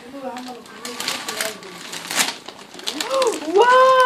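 Wrapping paper being ripped and crumpled off a gift box in several short tears, with one longer rip about two seconds in. Near the end a woman's drawn-out "wow" is the loudest sound.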